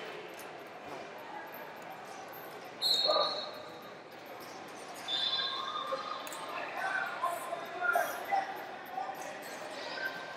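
Hubbub of a large gym hall with scattered distant voices, and two short high whistle blasts, about three and five seconds in, from referees' whistles.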